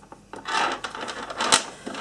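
Beads on an elastic bracelet clicking and rubbing against each other and the tabletop as the bracelet is handled, with one sharper click about one and a half seconds in.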